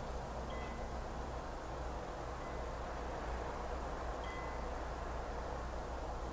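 Steady background hiss with a few faint, short high ringing tones, three times.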